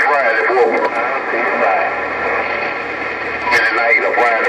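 A station's voice coming in over the HR2510 radio's speaker on 27.085 MHz, squeezed into a narrow telephone-like band and mixed with steady static hiss. The talk is strongest in the first second and again near the end.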